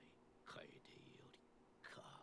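Near silence, with faint snatches of a voice, about half a second in and again near the end.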